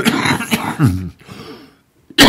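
A man clearing his throat with a sudden start, noisy and partly voiced for about a second, then falling away to a short silence near the end.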